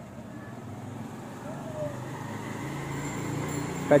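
A road vehicle's engine hum that grows steadily louder over a few seconds.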